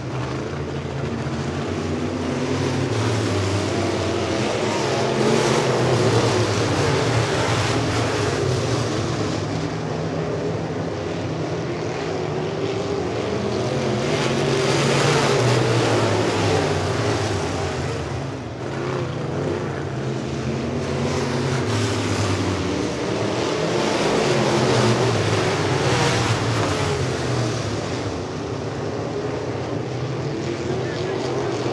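Dirt-track modified race cars' V8 engines running around the oval, their pitch rising and falling in long sweeps as the cars accelerate, lift and pass by.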